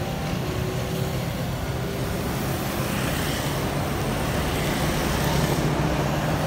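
Steady road traffic of motorbikes and cars passing on a wet highway: a continuous hum of engines under tyre hiss, swelling slightly about halfway through as vehicles pass close by.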